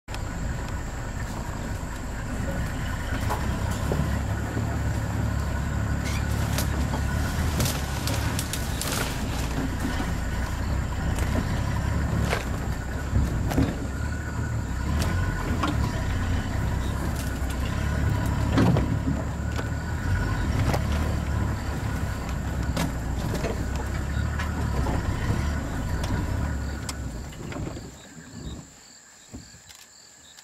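Safari vehicle driving on a rough dirt track, its engine running as a steady low rumble with scattered knocks and rattles from the bumps. Near the end the vehicle noise stops abruptly, leaving only faint background.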